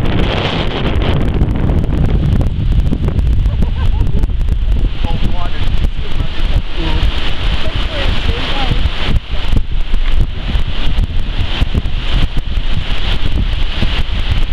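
Wind buffeting the microphone: a loud, steady low rumble and rush with no break.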